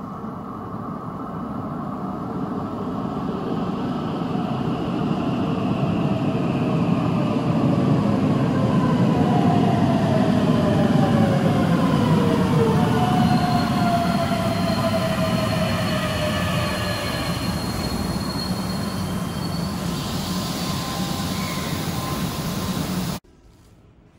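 Keihan 7000 series electric train arriving at an underground platform: its running rumble grows steadily louder as it comes in, with a motor whine gliding down in pitch as it slows, then a thin high steady squeal as it draws up. The sound cuts off suddenly near the end.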